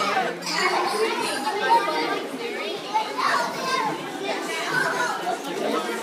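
Many children and adults talking and calling at once, overlapping chatter in a reverberant indoor pool hall.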